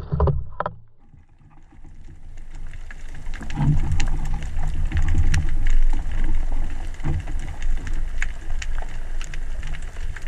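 Underwater sound just after a rubber-band speargun shot: a few sharp knocks in the first second. Then, from about two seconds in, a steady low rumble of water moving past as the diver swims along the shooting line, with scattered sharp crackling clicks.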